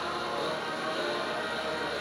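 Ceremonial music, the national anthem, playing steadily with several held notes.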